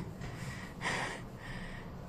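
A woman breathing hard through her mouth as she catches her breath after a fast exercise set, with two soft breaths, the clearer one about a second in.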